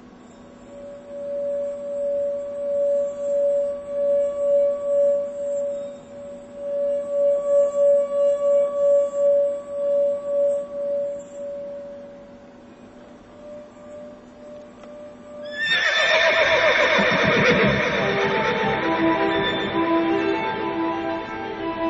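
A wine glass sung by a finger circling its rim: one steady ringing pitch that swells and fades with each pass, dying away after about twelve seconds. Near the end a horse gives a loud neigh, and string music enters under it.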